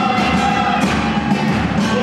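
Live band playing a murga song, with drum kit and percussion hits over sustained instruments.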